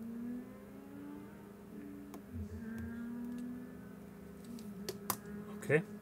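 A few faint clicks from a pen tip pressing the repaired metal button plate of an HME COM6000 intercom belt pack: one about two seconds in, then two close together near the end. A low steady hum runs underneath.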